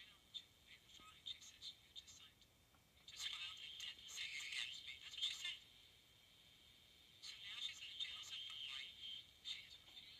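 A woman talking on an AM broadcast station, heard through the small loudspeaker of a homebuilt reflex AM radio receiver: faint and thin, with almost no low end, in two stretches of talk with a pause between. She sounds mad.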